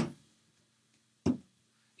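A glass beer bottle knocking against a tabletop as it is set down: a sharp knock right at the start, then one short, duller knock a little over a second in.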